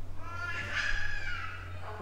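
A high-pitched, wavering cry that rises and then falls, lasting about a second and a half.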